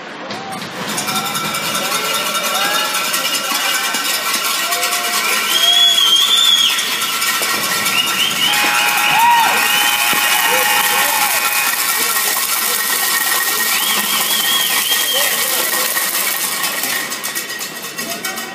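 Ice rink crowd cheering and shouting loudly, with high whistle-like calls and a steady high tone beneath, typical of the final buzzer at a hockey game. The cheering swells about a second in and dies away near the end.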